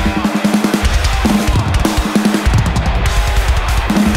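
Live metalcore band playing an instrumental stretch with no vocals: rapid drum-kit hits, bass drum and cymbals over stop-start chugging distorted guitar and bass.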